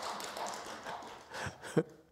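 A man laughing softly and breathily, fading away, with a short voiced catch near the end.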